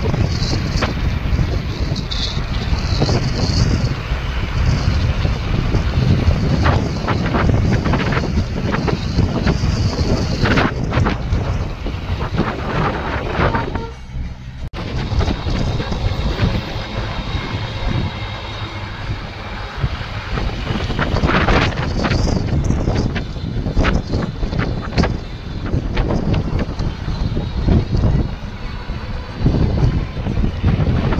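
Wind buffeting the microphone of a phone in a moving car, over a steady low rumble of road and engine noise, with a brief drop in level about halfway through.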